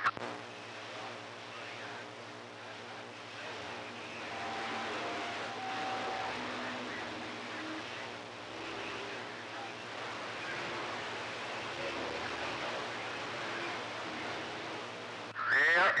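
CB radio receiver hissing with static between transmissions, with weak distant stations and faint short tones heard under the noise about four to seven seconds in.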